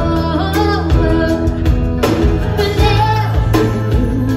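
Live pop band playing a ballad: a woman's lead vocal over keyboard, bass guitar and electric guitar, with a steady drum beat.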